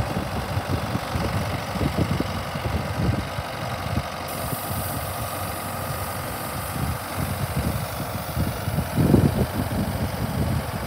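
RoGator self-propelled crop sprayer's diesel engine running steadily as the machine drives slowly along, a little louder near the end.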